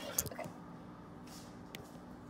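Light kitchen handling noises: a few soft clicks and taps early on, and one faint tick near the end, over a faint steady low hum.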